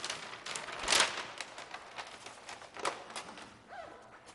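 A large sheet of paper rustling and crinkling as it is handled and hung up, in irregular crackles with the loudest about a second in.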